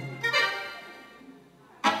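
A single held chord with an accordion-like sound from the stage band, entering just after the start and fading away over about a second. A man's voice on the PA comes back in near the end.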